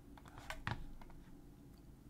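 A few faint clicks at a computer, with two sharper ones close together about half a second in.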